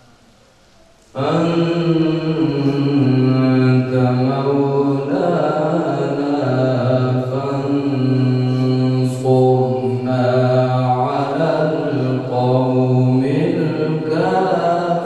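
A man reciting the Quran in the melodic, chanted style of tilawat, holding long sustained notes. The voice comes in suddenly about a second in, after a short pause for breath.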